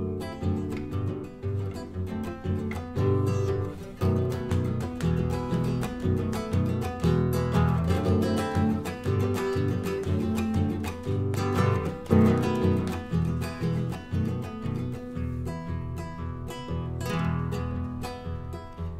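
Solo nylon-string classical guitar strumming chords in a steady, rhythmic refalosa pattern.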